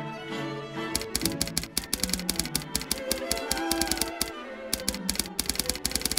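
Typewriter keystroke sound effect: rapid clicks begin about a second in, pause briefly past the middle, then carry on, over background string music.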